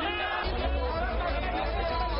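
A crowd's shout dies away, and music with a deep steady bass and a wavering melody comes in about half a second in.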